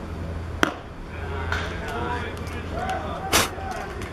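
A pitched baseball arriving at home plate with one sharp crack about half a second in. Voices talk over a steady low hum, and a louder, short noisy burst comes near the end.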